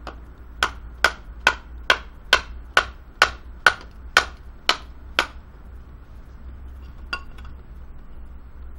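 Batoning: a wooden baton knocking on the spine of a Böker Bushcraft Plus knife, driving the blade down through a piece of wood. Eleven sharp knocks about two a second, then one lighter knock near the end.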